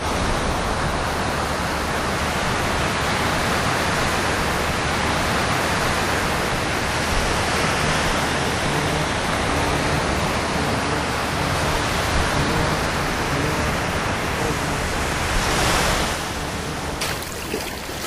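Steady rushing of sea surf, mixed with wind, swelling briefly near the end.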